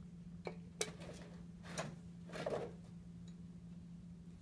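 A few light clicks and scrapes as hands twist the tie-down wires that hold a bonsai's root ball in its pot, the sharpest click about a second in, over a steady low hum.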